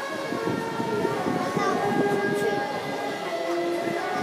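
Procession music with several long, held, horn-like notes changing pitch now and then, over crowd chatter.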